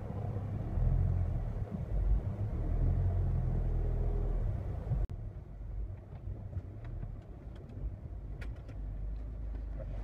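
Peugeot 806 2.1-litre turbodiesel engine running at about 1000 rpm, heard from inside the cabin as a steady low rumble. About five seconds in it cuts to a quieter take of the same idle, with a few light clicks near the end.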